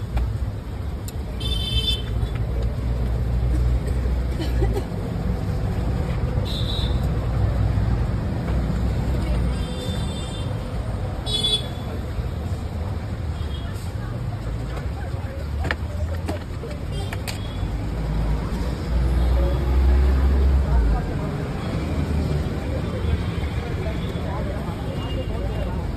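Roadside traffic: a steady low rumble of vehicle engines, louder for a couple of seconds near the end, with several short horn toots in the first half and voices in the background.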